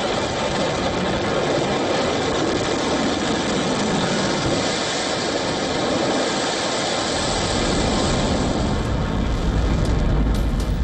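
Ballistic missile's rocket motor at launch: a loud, steady rushing noise, with a deeper rumble building over the last few seconds.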